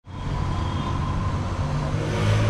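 City street traffic: a steady low vehicle engine rumble with road noise, rising quickly from silence at the start.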